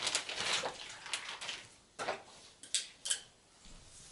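Hands working among the cables and plastic connectors inside an open desktop PC case while reconnecting the hard drive: a rustling scrape, then three sharp clicks a little after two seconds in.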